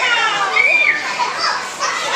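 Many young children's high-pitched voices at once, calling out and chattering as they play.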